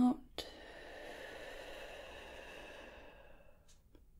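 A person's long, slow breath out, a soft breathy hiss that fades away over about three seconds. It opens with a small click just after the softly spoken word "out".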